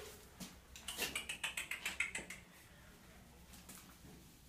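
A dog's claws clicking and scrabbling on a tile floor, a quick run of clicks about a second in that dies away after about two and a half seconds.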